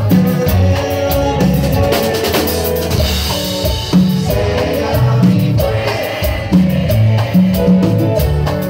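Live band music: electric bass, electric guitar and drum kit playing a song with a steady beat, with a lead vocal.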